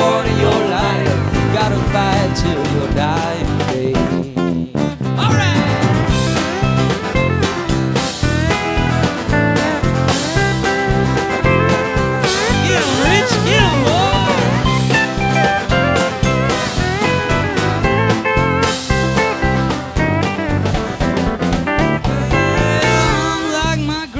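Live rock band playing an instrumental break: strummed acoustic guitar, electric guitar and bass with drums, and a lead line of bending notes around the middle.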